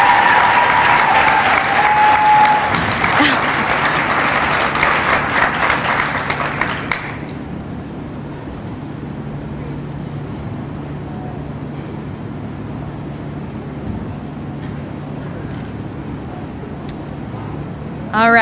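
Audience applauding, with one long high-pitched cheer in the first few seconds; the clapping dies away about seven seconds in, leaving a steady low hum in the hall.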